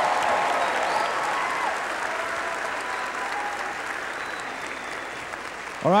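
A large congregation applauding, the clapping slowly dying down.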